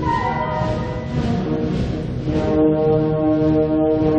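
A wind band playing sustained, brass-led chords, with clarinets and saxophones. The band swells louder a little past halfway.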